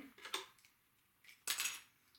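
Small pair of craft scissors picked up from among metal tools on a cutting mat: a light click about a third of a second in, then a louder metallic clatter about one and a half seconds in.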